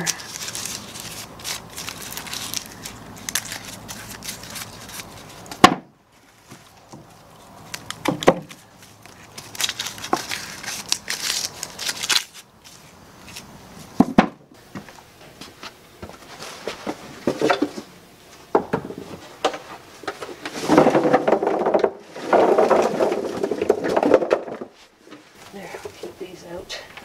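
Hand pruning shears snipping the roots off cured garlic bulbs, a few sharp snips, between stretches of crackly rustling as the dry, papery outer skins are rubbed and peeled off.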